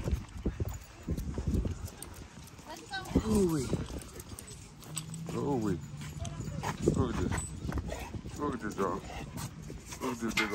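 A dog whining in short calls that fall in pitch, about five times, over light clicking of claws and steps on concrete.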